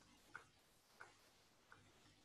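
Near silence broken by three faint, short ticks about two-thirds of a second apart.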